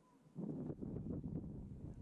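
Outdoor background noise: a low, uneven rumble of wind on the camera microphone, coming in about half a second in after a moment of near silence.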